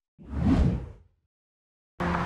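A whoosh transition sound effect that swells and fades away within about a second.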